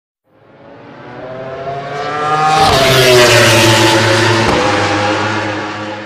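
A fast motor vehicle's engine passing by at speed. It swells from silence to a peak about three seconds in, with the pitch dropping as it passes, then fades away.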